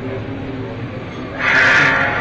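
Crowd murmuring, then about one and a half seconds in a sudden loud, high-pitched vocal cry or wail.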